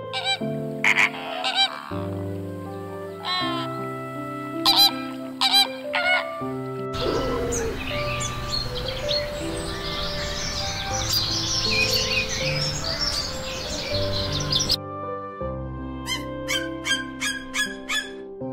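Greater flamingos honking over soft background music, several loud calls in the first seven seconds. Then a fruit bat (flying fox) colony chattering and squabbling as a dense, continuous din for about eight seconds, followed by a run of short, evenly repeated calls over the music near the end.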